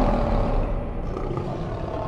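A lion-roar sound effect from a channel logo sting, with the sting's dramatic music dying away; it slowly fades from about half a second in.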